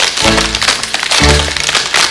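Metal taps on tap-dance shoes striking the stage in quick, dense clicks, over loud accompanying music with a heavy bass note about once a second.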